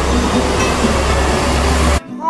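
A loud, steady roar with a deep rumble, as of a train running at a station platform. It cuts off suddenly at the end.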